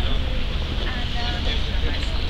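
Low rumble of wind on the microphone, with people's voices faint in the background.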